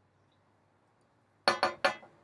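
A beer glass clinks three times in quick succession about a second and a half in, each strike ringing briefly.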